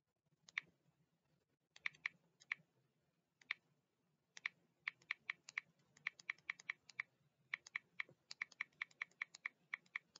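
Faint typing on a computer keyboard: a few scattered keystrokes at first, then a quick run of key clicks from a little before halfway.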